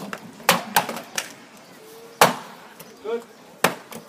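Axes chopping standing wooden blocks in a standing-block woodchop: irregular sharp knocks from two axemen, about five strikes, the loudest about two seconds in.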